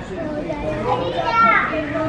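Overlapping voices of children and adults chattering, with no clear words standing out.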